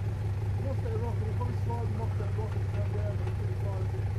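Toyota Hilux Surf's engine running steadily at low revs, a constant low hum with no revving.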